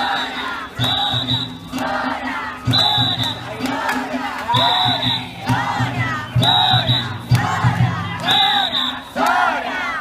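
Crowd of danjiri rope-pullers shouting a rhythmic chant together, the calls repeating over and over, with festival music underneath. A short high tone sounds about every two seconds.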